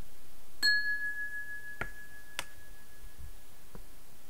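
A single bell-like chime, struck once about half a second in and ringing clear as it fades away over a couple of seconds. A few light clicks follow it.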